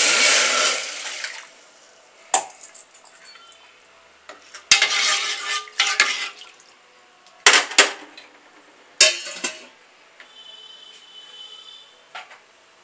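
Water poured into a metal pressure cooker pot of dry whole urad dal for about the first second, then a metal ladle stirring the lentils in the water: several bursts of swishing, with sharp clinks of the ladle against the pot.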